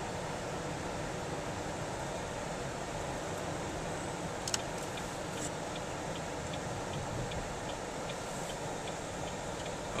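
Steady road and engine noise heard from inside a moving car's cabin, with one short click about four and a half seconds in and faint, evenly spaced ticks after it.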